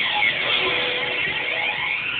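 Live rock band playing with electric guitars, heard as a thin, harsh wash that is heavy in the upper middle and light on bass.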